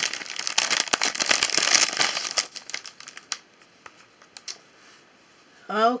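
Clear cellophane bag crinkling as it is handled and pulled open to take out a paper flip book. The crinkling is dense for the first two and a half seconds, then thins to a few scattered clicks and rustles.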